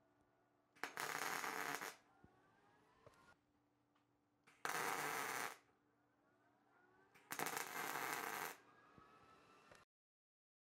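MIG welder arc laying three short tack welds on steel washers, each a burst of arc noise about a second long, a few seconds apart.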